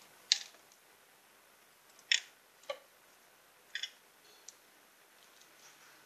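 Handling noise: about five short, sharp clicks and scrapes of a hand working among motorcycle parts up close, the two loudest near the start and about two seconds in, against quiet room tone.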